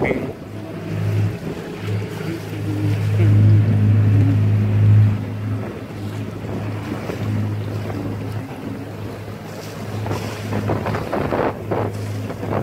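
A sailboat under way at sea: wind buffeting the microphone and water rushing along the hull, over a steady low hum that swells to its loudest about three to five seconds in.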